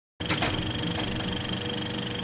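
Film projector running as an intro sound effect: a steady mechanical whirring with a fine, even clatter that starts abruptly just after the beginning.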